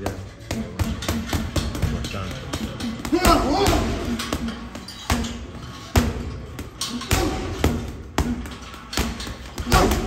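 Gloved punches thudding into a heavy bag in quick, irregular combinations, over background music.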